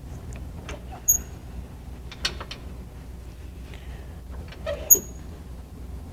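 A SECOA rope lock on a counterweight fly system's locking rail being worked by hand at its handle and adjustment screw while it is adjusted for rope and dog wear: three sharp mechanical clicks, two of them with a brief high squeak, the loudest about five seconds in.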